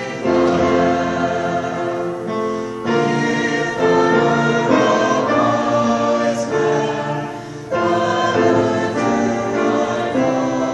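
Small mixed choir of men and women singing together in sustained phrases, with brief breaks about three seconds in and near eight seconds.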